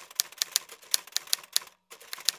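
Typewriter keystroke sound effect: a quick run of sharp key clacks, about five a second, with a short break near the end, as text is typed out on screen.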